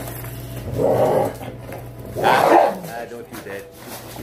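A large dog barking twice, two rough, loud barks about a second and a half apart.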